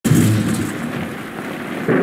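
Heavy rain falling with a loud rumble of thunder that starts suddenly and eases over the first second. A new loud sound begins just before the end.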